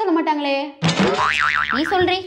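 A young woman's whining, drawn-out voice, then, just under a second in, a sudden comedic sound effect whose pitch wobbles rapidly up and down for about a second.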